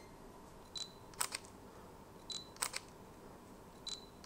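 Fujifilm X-T3 camera taking repeated shots about every second and a half. Each shot is a short focus-confirmation beep followed by a quick double click of the shutter. Two full shots are heard, and a third beep comes near the end.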